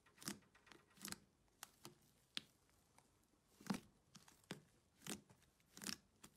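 Hands pressing and kneading a thick, fluffy slime in a plastic tub: quiet, irregular squishes, about ten short separate sounds with near silence between them.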